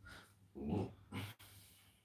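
Two short, low vocal sounds, the first about half a second in and a briefer one just after a second in.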